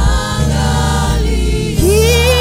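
Gospel worship team singing together in a choir of voices over low, sustained accompaniment notes, with long held and gliding sung pitches.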